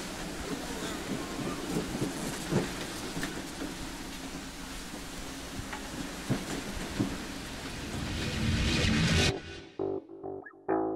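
Wind on the microphone and rushing, breaking water alongside a sailboat in rough seas, with a few sharp thumps. It swells louder near the end and then cuts off suddenly.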